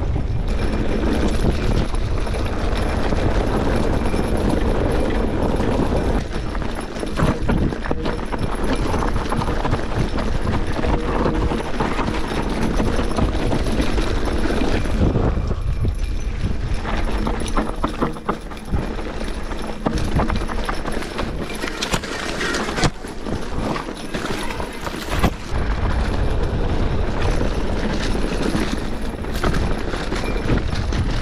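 A full-suspension mountain bike riding fast down dirt singletrack: tyres rolling over dirt and rock, with the bike rattling and clattering over bumps, under a steady low rumble of wind on the microphone.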